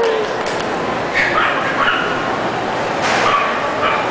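A small dog yipping and whining in short high-pitched bursts, over the steady chatter of a crowded show hall.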